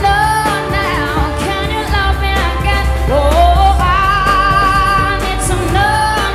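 A woman singing a pop song into a microphone over instrumental backing with a steady bass, holding one long note in the second half.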